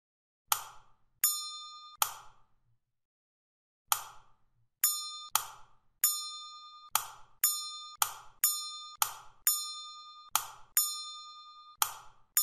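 A series of short electronic click and ding sound effects, about sixteen in twelve seconds at irregular spacing; many of the dings ring with a clear bell-like tone for a fraction of a second.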